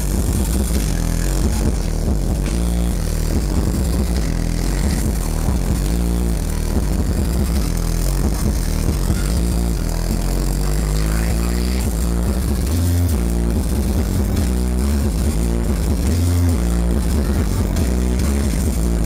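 Electronic dance music played loud over a nightclub sound system, with a heavy bass line running steadily throughout.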